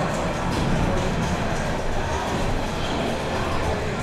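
Steady background noise of a pinball exhibition hall, with music playing from the pinball machines on the show floor.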